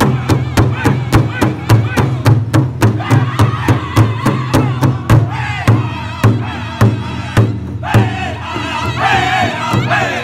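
Powwow drum group striking a large hide drum in unison with padded sticks, a steady, even beat, while the singers sing together in high, strained voices.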